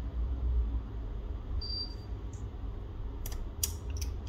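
A few small sharp clicks of tiny metal phone parts being handled: the screwed-down connector cover bracket is lifted off an iPhone's logic board and set down, with a brief faint high ping about halfway through. A steady low hum runs underneath.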